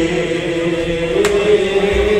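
Kashmiri Sufi song: a man's long, drawn-out sung line over a harmonium, with one sharp percussive strike just over a second in.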